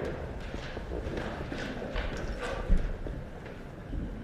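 A congregation getting to its feet: shuffling and scattered knocks and creaks of people rising from their seats, with one louder thump a little past halfway.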